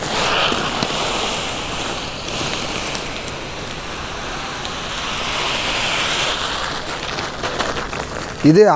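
Dry grain pouring from a sack onto a grain heap: a steady hiss that begins suddenly, swells a little midway and eases off near the end.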